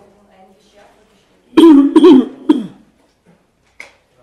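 A man coughing three times in quick succession, loud and close to the microphone.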